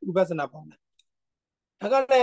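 A man lecturing: he speaks for under a second, pauses for about a second with one faint click in the gap, then starts speaking again near the end.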